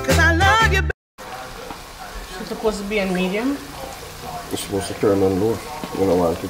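Music with a beat cuts off about a second in. Then oil sizzles as rounds of dough for Jamaican fried dumplings fry in a pan, with a voice talking quietly twice.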